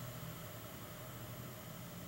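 Faint steady hiss with a low hum: room tone picked up by the recording microphone.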